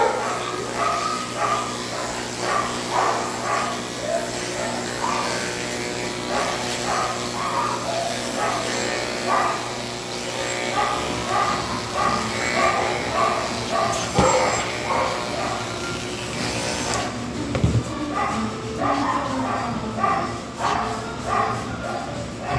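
Cordless electric dog clipper humming steadily as it trims a Pomeranian's coat. Over it, a dog barks repeatedly in short calls, about two a second.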